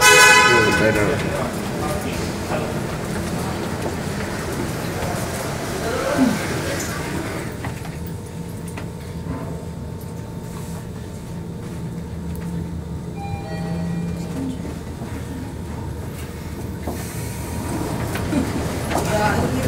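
Mitsubishi glass elevator riding up, with a low steady hum throughout. A loud, brief pitched tone sounds right at the start, and a few short tones come near the end.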